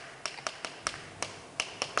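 Chalk tapping and clicking against a chalkboard as Korean characters are written stroke by stroke: a quick, irregular string of sharp ticks.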